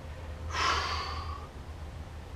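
A man's loud, breathy exhale during a yoga side bend: one airy breath starting about half a second in and lasting about a second, with no voice in it.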